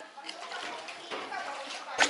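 Faint voices of people talking at a distance, over light water sounds from the rowboat's oar.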